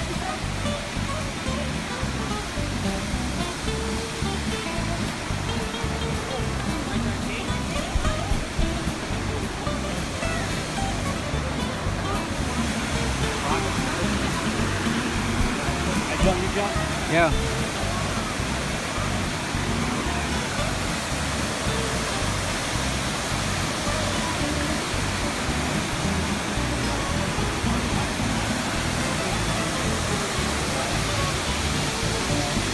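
Steady rush of a waterfall and fast-flowing river water, growing a little louder about halfway through.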